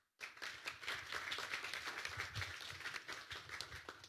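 Audience applauding: many hands clapping, starting suddenly and dying away near the end.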